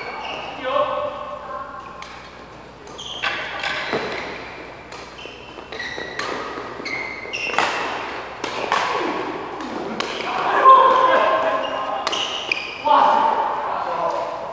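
Badminton rally: several sharp hits of rackets striking the shuttlecock, spaced irregularly, echoing in a large hall, with voices in the background.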